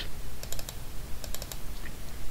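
Computer mouse clicks: a few quick sharp clicks in two close clusters, about half a second in and about a second and a half in, as folders and a file are double-clicked in a file dialog.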